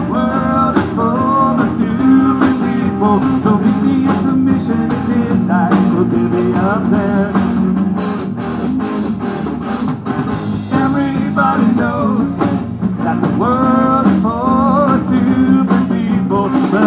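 Live rock band playing: electric guitars and bass over a drum kit with cymbal hits, a lead line bending through phrases in the upper middle.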